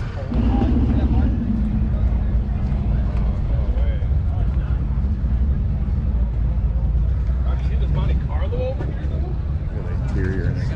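A car engine running close by with a deep, steady rumble that comes in about a third of a second in, its pitch settling slightly lower over the first second and easing off near the end. Voices of people in a crowd are heard faintly underneath.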